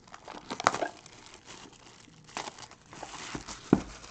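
Plastic shrink wrap crinkling and tearing in short bursts as it is stripped off a sealed trading-card box, then a single sharp knock near the end as the box is set down on the table.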